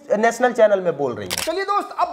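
Men talking, with a brief sharp noise about one and a half seconds in, a shutter-like click at an edit.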